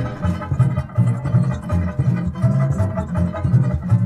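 Instrumental passage of a Cape Malay choir record from a 1975 LP: plucked guitar and bass keeping a steady, bouncy rhythm, with the choir silent.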